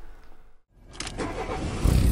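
A car engine starting: a few short clicks about a second in, then a low engine rumble that builds up.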